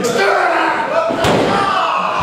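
One loud slam about a second in: a wrestler's body hitting the ring mat, over people's voices.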